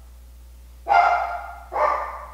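A woman's high-pitched moaning, two drawn-out calls in a row, the second starting near the end.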